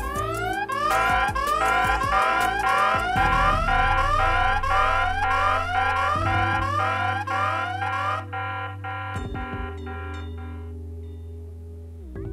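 Emergency SOS alarm of a push-to-talk over cellular system, set off by pressing the handset's emergency button: an electronic tone sweeping upward over and over, about two sweeps a second. It fades away about two-thirds of the way through.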